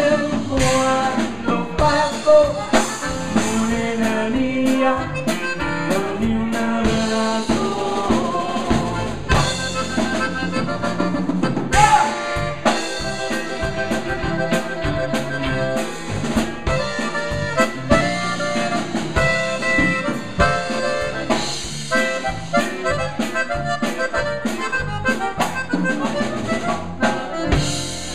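Live conjunto band playing a song at a steady beat: accordion over bajo sexto, electric bass and drum kit.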